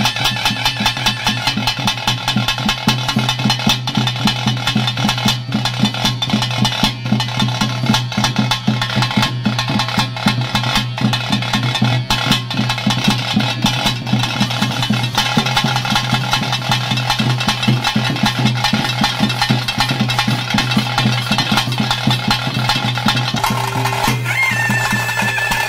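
Traditional ritual drumming: fast, dense strokes with a steady low hum beneath, played without a break.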